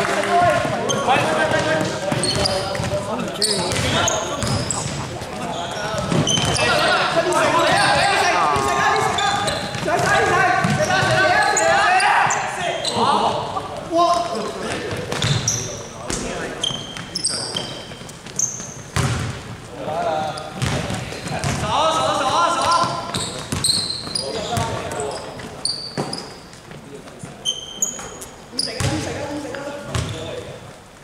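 Players' voices calling out on court, heaviest in the first half, over a basketball bouncing on a hardwood floor and many short, high sneaker squeaks, all echoing in a large sports hall.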